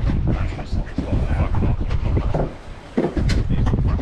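Wind buffeting the microphone on an open boat at sea, a heavy low rumble that drops away briefly about two and a half seconds in. Muffled voices and a few sharp clicks come near the end.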